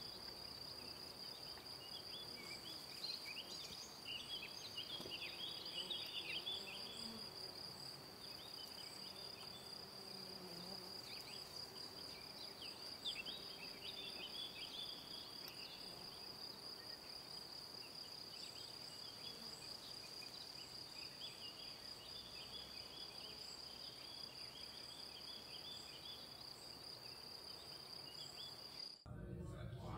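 Meadow ambience: a steady high-pitched insect trill with scattered short chirps over it, and a faint, wavering low buzz of bees in the first half.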